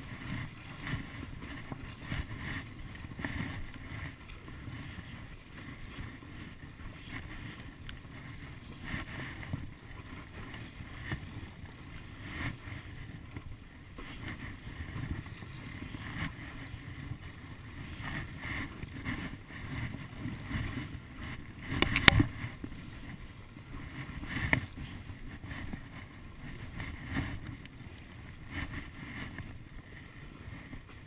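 Stand-up paddleboard paddle strokes in choppy sea water, a soft splashing surge every second or two, over water sloshing at the board and a low rumble of wind on the microphone. One sharp, louder knock about 22 seconds in.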